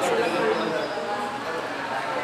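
A man's voice talking briefly at the start, then quieter room noise with distant voices.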